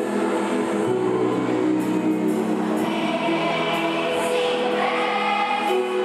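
Children's choir singing, holding long notes, over an instrumental backing with a low bass line.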